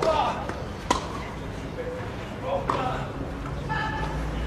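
Tennis racket striking the ball on a clay court: a sharp hit about a second in and another just under three seconds in, with short bursts of voice around them.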